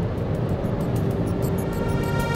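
Steady road and wind noise inside the cabin of a Mercedes EQC electric SUV at motorway speed, with background music fading in as held notes during the second half.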